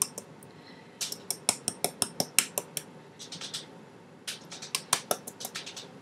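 Cinnamon shaker jar being shaken and tapped over bread: quick taps and rattles, about five a second, in two runs with a short pause between.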